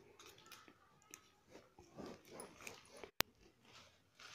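Faint rustling and light clicking of flat plastic basket-weaving wire being handled and pulled through the knots, with one sharp click about three seconds in.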